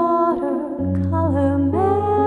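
Music: a woman's voice singing a slow, wordless humming line over guitar accompaniment, with low bass notes on the guitar coming in a little under a second in.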